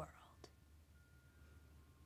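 Near silence: faint room tone with a low steady hum and one faint click about half a second in.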